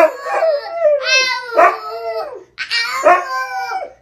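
A Siberian husky howling in long calls that waver up and down in pitch, trading sounds with a toddler who laughs and shouts back. The calls come in two stretches, with a short break about two and a half seconds in.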